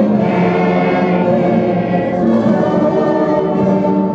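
A large group of schoolchildren singing together, holding long steady notes.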